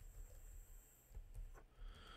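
Faint computer keyboard typing: a handful of scattered keystrokes over a low hum.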